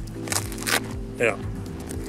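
Background music with steady held notes, with two short sharp rustling clicks in the first second as a head cover is pulled off a golf iron.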